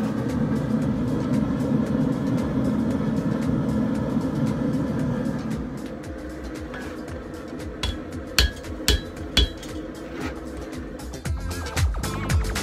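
A forge running steadily while steel heats in it. About six seconds in it falls quieter, and from about eight seconds a hammer strikes hot steel on the anvil: four ringing blows in quick succession, with more near the end, bending the piece further.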